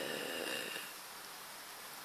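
A sniff through a nose blocked by a head cold, lasting just under a second, with a faint whistle in it.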